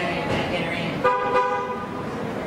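Car horn sounding one short, steady honk about a second in, amid people's voices.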